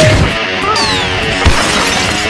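Background music with comedy sound effects laid over it: a crash dying away at the start, a falling whistle about three quarters of a second in, and a short thump about one and a half seconds in.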